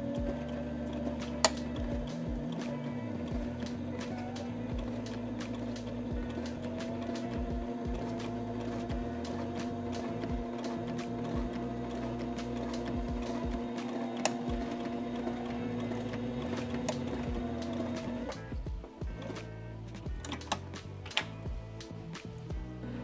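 Sailrite Ultrafeed LSZ-1 sewing machine running steadily while topstitching through two layers of canvas. It picks up speed about six seconds in and stops near the end.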